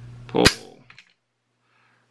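A single sharp metallic snap of an AK rifle's hammer falling as its ALG AKT-EL trigger breaks, dry-fired by a trigger pull gauge at about two and a quarter pounds. A couple of faint clicks follow.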